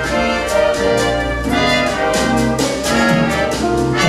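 Jazz big band playing a swing arrangement, the brass section of trumpets and trombones to the fore over saxophones, bass and drums, moving through sustained chords with punched accents.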